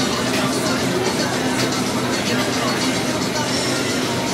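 Restaurant ambience: background music playing steadily under indistinct chatter.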